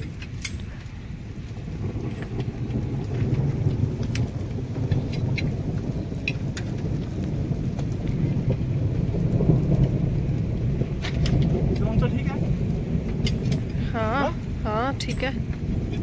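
Wind buffeting the microphone with a steady low rumble, with scattered light clicks and taps from a metal tent pole being handled. Near the end a voice calls out a few times, rising and falling in pitch.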